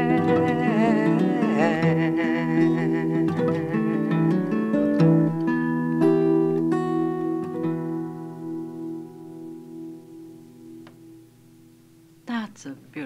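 The end of a folk song: a singing voice holds its last note with vibrato over acoustic guitar. The guitar then plucks a few closing notes, and the final chord rings out and fades away.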